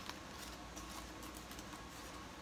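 Faint rustling and light ticking of a paper coffee filter holding loose ribbon-cut pipe tobacco as it is handled, over a low steady hum.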